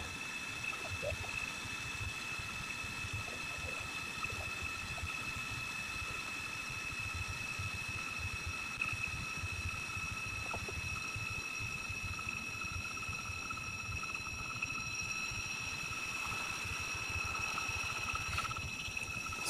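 On-car brake lathe running, spinning a rusted brake rotor on the car's hub while its cutting bits skim about seven thousandths of an inch off each face. It makes a steady high-pitched whine over a low rumble.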